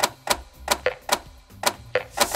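Sound effects of an animated intro sting: a quick, irregular run of sharp clicks and pops, about four or five a second, some with a short pitched ring.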